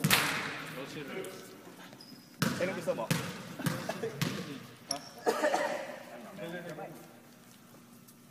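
A basketball bounced on a hardwood gym floor: several sharp thuds, the loudest right at the start and a few more spread over the next five seconds, with faint voices around them.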